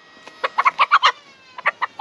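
A chicken held in someone's arms clucking in a quick series of short clucks, with a brief pause about a second and a half in.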